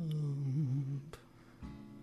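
Quiet solo guitar accompaniment in a pause of the song. A low sung note glides down, wavers and fades out over the first second, a faint click follows, and a soft guitar chord comes in near the end.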